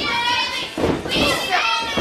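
High-pitched children's voices shouting and yelling over one another from the audience.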